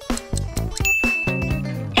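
Light background music with plucked strings, and a single high bell-like ding about a second in that rings for under a second: the quiz timer's time-up signal.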